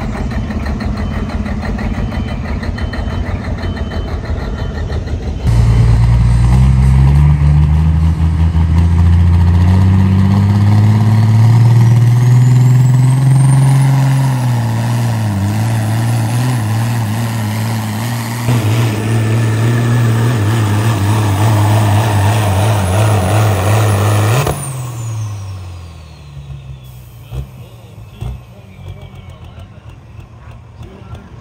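For the first few seconds a semi truck's diesel engine runs at a lower, steady level. Then a Peterbilt semi's diesel engine is heard at full power pulling a sled: its pitch climbs for several seconds with a rising turbo whistle, then holds high and steady with a brief step partway through. Near the end the throttle comes off, the engine note drops suddenly and the turbo whistle winds down.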